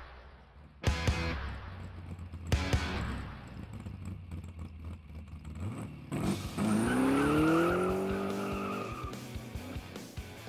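Title-sequence music with two heavy hits, about one and two and a half seconds in. From about six seconds in, a car engine revs up, rising in pitch for two to three seconds.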